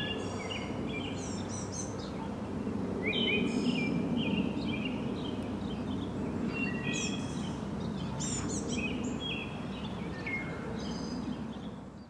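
Outdoor ambience: birds chirping in short, repeated calls throughout, over a steady low background noise.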